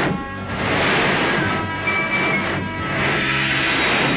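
Dramatic soundtrack music with held tones, overlaid by swells of rushing, whooshing noise from the fight's sound effects, one about a second in and another near the end.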